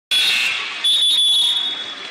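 A referee's whistle blown once, a shrill steady tone held for almost a second about midway, over the steady noise of a gym crowd.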